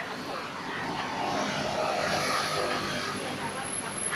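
A passing engine whose noise swells to a peak about halfway through and then eases off, over general street noise.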